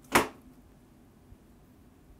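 A single short, sharp gasp of surprise, a quick breathy intake of air, right at the start, followed by near silence.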